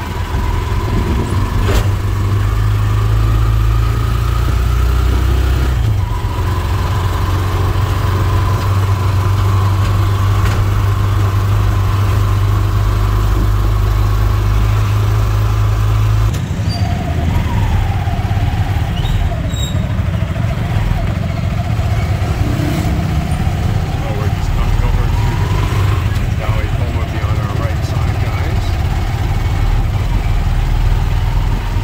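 A Philippine tricycle's motorcycle engine running steadily, heard from inside the sidecar, with a whining note that rises and falls as the ride goes on. About halfway through, the low drone changes character.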